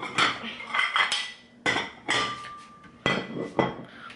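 Dishes and cutlery clattering in a series of about six sharp knocks and clinks as plates and utensils are handled, one clink ringing briefly about halfway through.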